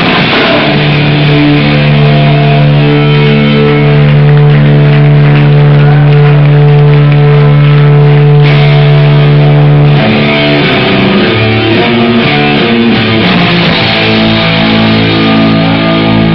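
Hardcore band playing live with loud distorted guitars, bass and drums in a lo-fi, crappy-sounding recording. A low chord is held for most of the first ten seconds, then the riff moves on through changing notes.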